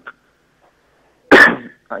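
A single loud human cough about a second and a half in, after a near-silent pause.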